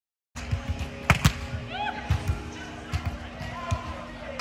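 Sharp slaps of hands striking a volleyball, the two loudest close together about a second in, with lighter knocks after, over background voices and a steady low hum.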